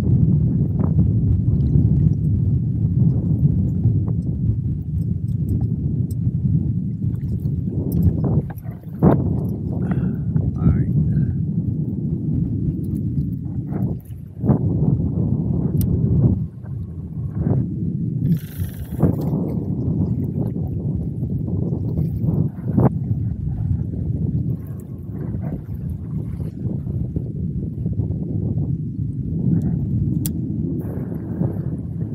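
Wind buffeting the microphone in a steady low rumble on choppy water, with water lapping at a kayak hull and occasional knocks and clicks from handling the fishing gear.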